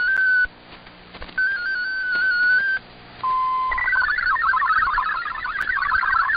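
Shortwave digital-mode transmission heard through a receiver over radio hiss. Two short stepping-tone RSID bursts come first, then a brief steady tone. About four seconds in, the fast warbling multi-tone MFSK64 data signal starts; it carries the Radiogram's text.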